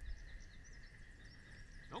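Quiet outdoor ambience: faint, scattered bird chirps over a steady high-pitched drone and a low rumble, with a voice starting right at the end.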